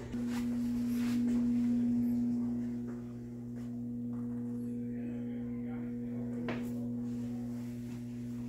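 A steady low electrical hum, one unchanging pitch with overtones, a little louder for the first couple of seconds, with a faint knock or two.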